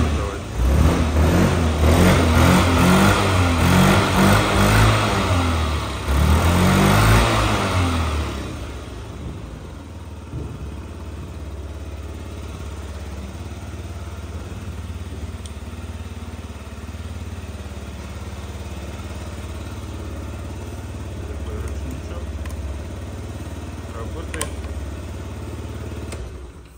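Yamaha Gear scooter's four-stroke, fuel-injected, liquid-cooled single-cylinder engine revved in several blips of the throttle for about the first eight seconds. It then settles to a steady, even idle.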